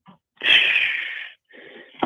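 A person's loud, breathy, voiceless wheeze, starting about half a second in and lasting about a second, followed by a fainter breath.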